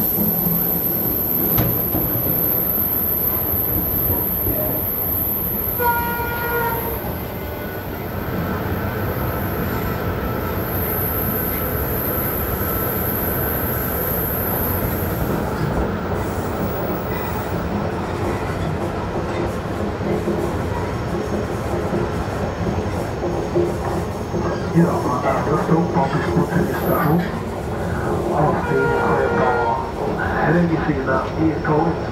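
Train travelling, heard from inside a carriage: a steady rolling rumble. A short horn tone sounds about six seconds in and again at the very end, and knocks and rattles come in the last few seconds.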